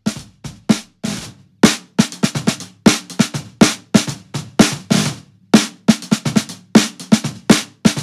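Recorded lo-fi snare track played back solo: a shallow piccolo snare, a cut-down Gretsch Energy, played very lightly in quick, uneven strokes and ruffs, several hits a second. Its fundamental rings as a low steady tone under the hits, heard through an EQ that rolls off the lows and cuts near 217 Hz.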